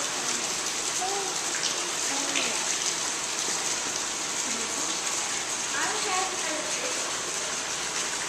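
Steady rush of running water from a museum exhibit's water feature, with faint voices underneath.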